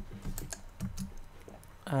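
Soft, irregular clicks and taps of a computer mouse and keyboard, several scattered through the pause, with a short spoken "uh" at the very end.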